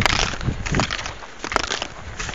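Ski-touring skis and poles crunching and scraping on snow in an irregular series of crackles and clicks, with wind rumbling on the microphone in the first half.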